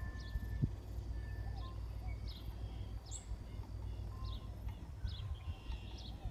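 Small birds chirping, short high calls repeating every second or so, over a steady low rumble.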